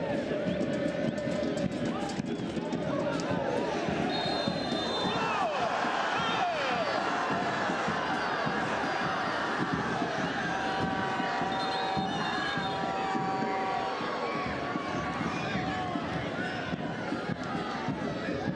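Football stadium crowd noise: many voices shouting and chanting together. Short high whistle tones come twice, about four and twelve seconds in.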